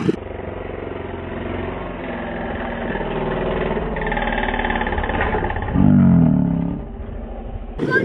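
SSR 70 pit bike's small single-cylinder four-stroke engine running, sounding dull with no treble, with a louder rise in engine sound about six seconds in.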